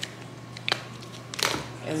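Sour cream being squeezed from a plastic squeeze pack onto boiled potatoes in a pot: quiet, with a light click about a third of the way in and another click with a short hiss of air about three quarters of the way through.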